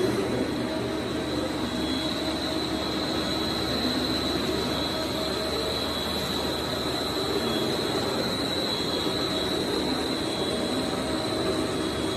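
Plastic pelletizing line running: a steady mechanical din with a high, steady whine over it.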